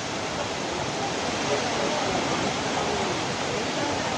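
Steady rushing noise of a landslide: soil and rocks pouring down a hillside.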